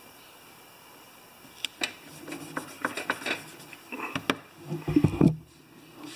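Handling noise: scattered light clicks and rustles, with a loud low bump about five seconds in as the camera is handled and moved.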